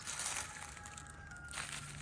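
Dry fallen leaves crunching and rustling as a cat shifts about on the leaf litter and a hand reaches down to it, with a burst of rustling at the start and another near the end.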